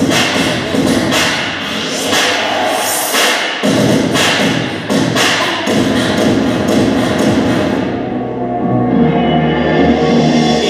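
Recorded music for a dance team routine, played over loudspeakers in a gym, with hard percussive hits roughly once a second at first. The arrangement changes about four seconds in, and near the end the high end drops away as a new, bass-heavy section begins.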